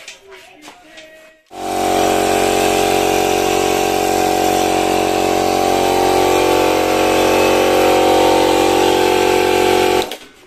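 Orient 25-litre electric air compressor, rated 2.5 HP, switched on about a second and a half in after a few light handling clicks, then running loud and steady with an even hum until it cuts off at the end.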